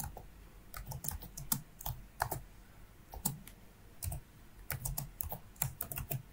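Typing on a computer keyboard: irregular keystroke clicks with short pauses between them.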